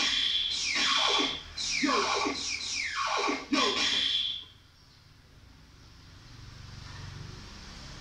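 Electronic keyboard playing a run of quick falling swoops in pitch, loud, that stops about four and a half seconds in, leaving a soft low sustained tone.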